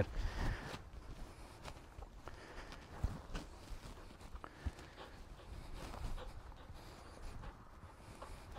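Faint, irregular footsteps of a person and a dog moving over grass, with a few soft knocks.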